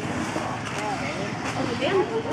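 Several people's voices talking over one another, a murmur of overlapping chatter with no one voice standing out.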